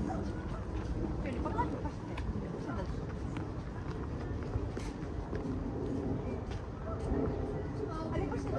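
Indistinct voices of people talking close by, with footsteps on a paved path and a steady low background noise.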